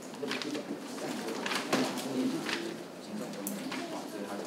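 Sheets of paper rustling as they are handled and shuffled, in several short bursts, over a soft low murmur.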